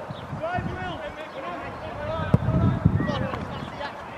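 Footballers' voices shouting and calling across the pitch, with one sharp thud of the ball being kicked a little past halfway.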